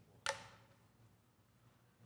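Quiet room tone, with one short sharp click-like sound about a quarter of a second in.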